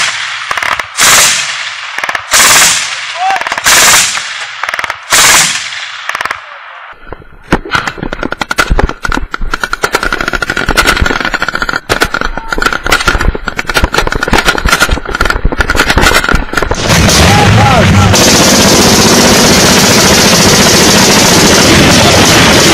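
Pickup-mounted heavy machine gun firing, with loud reports coming about every three-quarters of a second for the first six seconds. After that comes a dense, rapid crackle of small-arms fire lasting about ten seconds. From about 17 s on, a loud steady rushing noise takes over.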